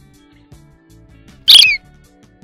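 Quiet intro music of low stepped notes; about one and a half seconds in, a short, loud bird-like chirp sound effect that glides down in pitch.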